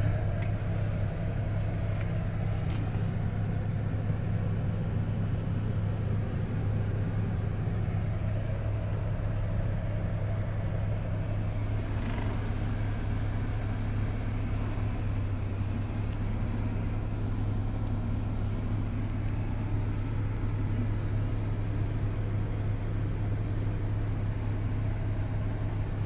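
Chrysler 300C engine idling steadily at about 700 rpm in Park, heard from inside the cabin.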